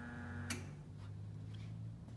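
Ledco Digital 42-inch laminator's roller drive running in reverse with a steady low hum. A single sharp click comes about half a second in.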